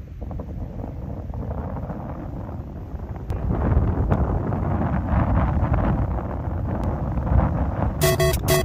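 Heavy wind buffeting the microphone, louder from about three and a half seconds in, with a few faint clicks of a golf club striking balls on short chip shots.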